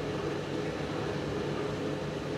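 Steady background hum and hiss, with a faint steady tone.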